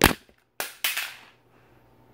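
A sharp knock, then about half a second later two rougher, noisier knocks close to the microphone, as a small corded plastic object is dropped near the phone.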